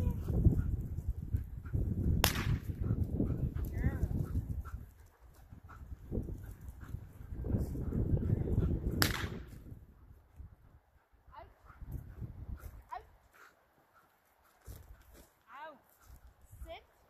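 Two sharp gunshot cracks, about seven seconds apart, fired as part of a dog's gunshot desensitization. They sit over a low rumbling noise.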